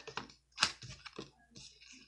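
A deck of tarot cards shuffled by hand: an irregular run of sharp card clicks and flutters, the loudest a little over half a second in.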